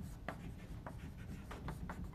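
Chalk writing on a chalkboard: a quick series of short scratches and taps as the chalk forms the letters of a word, stroke by stroke.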